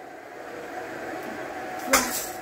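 Steady hiss of a stainless steel pot of water heating on a gas hob, then a sharp clatter near the end as a bundle of dry spaghetti is dropped into the pot.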